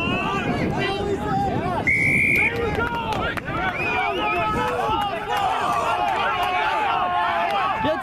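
Many rugby players' voices shouting over one another, with one short referee's whistle blast, a little over half a second long, about two seconds in.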